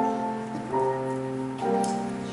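Slow, quiet keyboard music: sustained chords that change about once a second.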